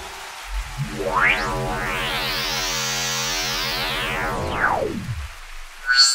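Electronic synthesizer intro: a sustained synth chord with a filter sweep that rises and then falls over about four seconds, ending in a short hit.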